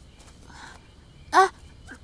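A young woman's short wordless vocal sound, once, about one and a half seconds in, over a quiet background.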